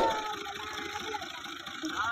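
Bogged Ghazi (Fiat) farm tractor's diesel engine running at a steady idle. A single sharp metallic knock comes right at the start and dies away quickly.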